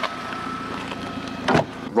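Car engine running steadily, with one sharp knock about one and a half seconds in.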